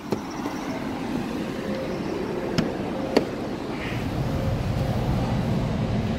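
Mercedes-Benz C63 AMG 507 Edition's 6.2-litre V8 idling, a steady low rumble that grows a little louder from about four seconds in. Two sharp clicks sound near the middle.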